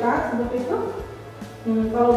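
A woman's voice speaking, with background music playing under it.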